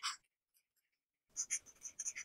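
Alcohol marker nib rubbing on paper in quick back-and-forth colouring strokes. The sound stops for about a second, then the strokes start again.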